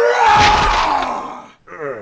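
An animated character's strained, drawn-out groaning yell of effort over a deep rumbling sound effect, lasting about a second and a half and fading out, followed by a short voiced sound near the end.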